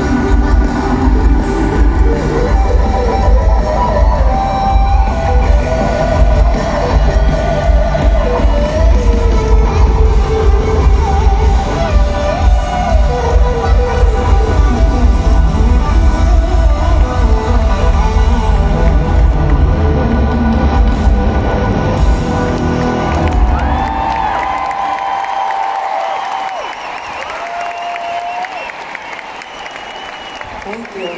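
Live pop-rock band with electric guitar, drums and heavy bass playing loud over a stadium PA, heard from inside the crowd. About three-quarters of the way through, the band stops and the crowd cheers.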